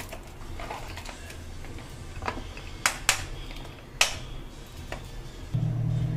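A few sharp, separate clicks from glass food-storage containers being handled, over a low background hum. From about five and a half seconds in, a refrigerator-freezer's steady low hum becomes much louder.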